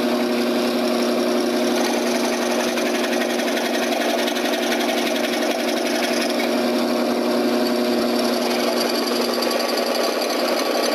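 Scroll saw running, its blade going rapidly up and down as it cuts a small piece of wood along a line: a steady hum with a fast, even chatter.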